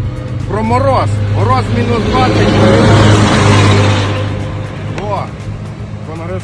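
A road vehicle passing close by, its noise swelling to a peak about three seconds in and fading away again, over background music with a steady low note and a few short vocal sounds.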